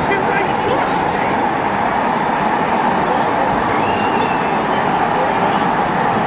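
Dense, steady noise of a large stadium crowd, many voices blended together with no single words, cutting in and out abruptly.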